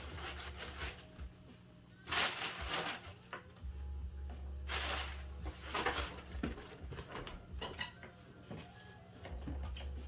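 Crinkly wrapping paper rustling in a cardboard shoebox as a pair of sneakers is lifted out, in a few short bursts about two, five and six seconds in.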